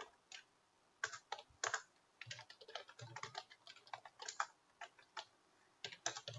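Computer keyboard typing in short, irregular runs of faint keystrokes with brief pauses between them.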